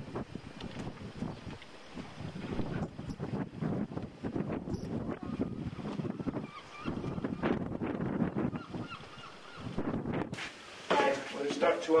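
Wind gusting on the microphone in uneven rises and falls. Near the end the sound changes and a voice starts.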